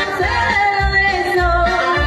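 A woman singing held notes into a microphone over backing music with a steady low beat, about one beat every two-thirds of a second.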